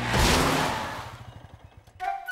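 Cartoon sound effect of a truck engine speeding past: a loud whoosh of engine noise just after the start, with a fast low putter that fades away over about a second and a half.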